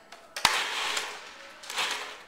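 Food processor pulsed with black bean soup in the bowl: a sharp click about half a second in, then about a second of the motor chopping and churning the beans before it dies away, and a second, shorter pulse near the end.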